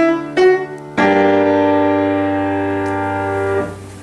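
Piano playing an ascending G melodic-minor line: E natural and F sharp in quick succession, rising to G about a second in on a full sustained chord that rings for about two and a half seconds before fading. The raised E natural and F sharp over the five chord lead the melody up to the tonic G.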